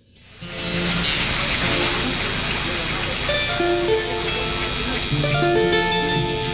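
Live Andean folk band music fading in from silence about half a second in: strummed guitars with held melody notes over a dense, steady wash of sound.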